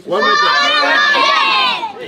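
A crowd of children shouting together in one loud cheer that lasts nearly two seconds and then stops.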